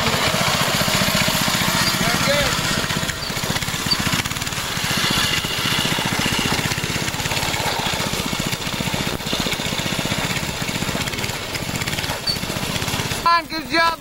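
A go-kart's small gasoline engine running steadily with a rapid, even putter as the kart is driven around. A voice calls out near the end.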